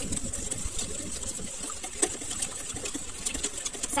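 Wire whisk beating a thin milk-and-cream dressing in a stainless steel bowl: a rapid, uneven clatter of the tines against the metal.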